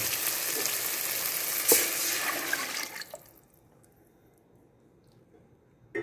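Water poured into a hot metal pot of frying onion and tomato, hissing and sizzling as it hits, with one sharp knock about two seconds in. The sound falls away to near silence about three seconds in.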